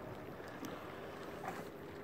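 Steady wind and water noise on the microphone, with a faint steady hum coming in about halfway through and a couple of faint clicks.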